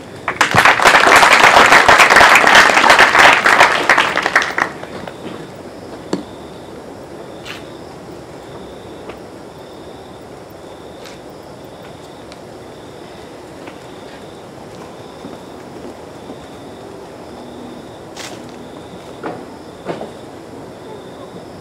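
An audience applauding for about four seconds, a dense patter of hand claps that then dies away. It leaves a low background with a few faint clicks and a faint high tone pulsing at an even rate.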